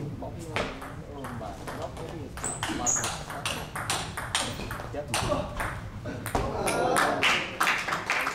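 Table tennis rally: the ball clicking sharply off bats and table, about two or three hits a second in a long exchange, with spectators' voices under it.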